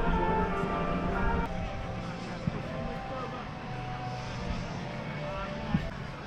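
Background music fading out about a second and a half in, leaving a quieter outdoor background of faint, indistinct voices with a couple of short knocks.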